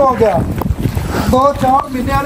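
A person's voice calling out in two drawn-out stretches, with wind rumble on the microphone.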